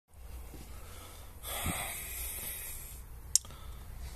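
A person breathing out close to the microphone over a low steady hum, then a single sharp click.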